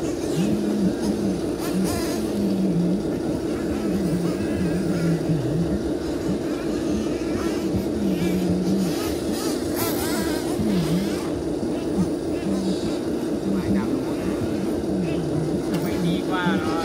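RC excavator's motor running with a steady drone, its pitch repeatedly dipping and recovering as the boom, arm and bucket are worked, with brief clatters of soil.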